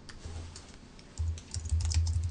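Typing on a keyboard: irregular quick key clicks with dull thuds under them, faint at first and coming thick and fast from about a second in.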